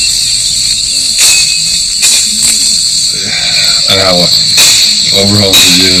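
Loud, steady, high-pitched chorus of rainforest insects, surging every second or so.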